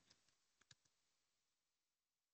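Near silence, with two or three very faint clicks a little over half a second in.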